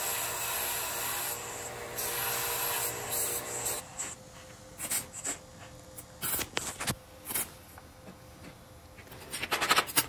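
Vevor belt/disc sander running while a small steel part is pressed to the belt to grind off burrs: a steady grinding rasp over the motor's hum, for almost four seconds. It cuts off suddenly, and then come a few scattered light knocks and clinks of steel pieces and a magnet being set down on a steel welding table.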